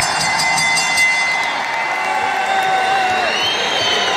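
Wrestling ring bell rung rapidly several times in the first second or so, signalling the end of the match, over a cheering arena crowd. Entrance music then plays over the PA.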